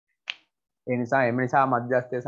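A single short, sharp click, then a man speaking Sinhala from just under a second in.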